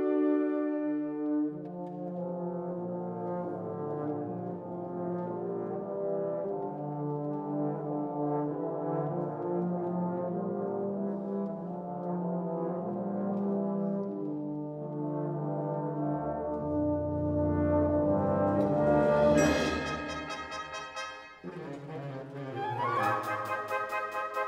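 Concert wind band playing a slow passage of held chords in the brass over low brass notes. The music swells to a loud peak about 19 seconds in, drops away briefly, then a new rising, brighter phrase starts near the end.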